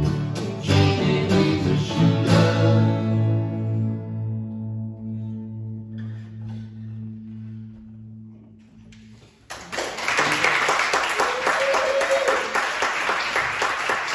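Acoustic guitars and a bass guitar strum the closing chords of a song, and the last chord rings and slowly fades away. About nine and a half seconds in, audience applause breaks out and carries on.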